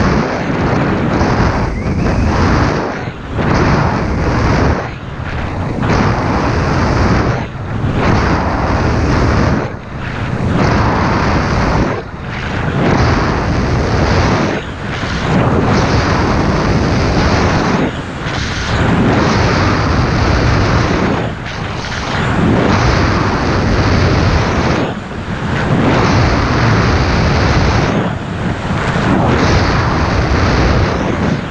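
Skis carving down a groomed piste: a loud rushing of wind on the action camera's microphone mixed with the edges scraping over packed snow. It swells and drops with each turn, every two to three seconds.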